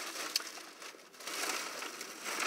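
A takeout bag rustling and crinkling as it is handled and opened, with small crackles and clicks, getting busier in the second half.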